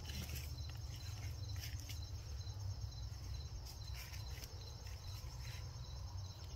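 A steady chorus of insects such as crickets chirping in high, even pulses, over a constant low rumble and a few faint rustles.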